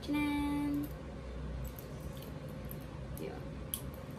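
A woman's brief hum at one steady pitch, under a second long, then a few faint small clicks of a bag's metal padlock and key being handled.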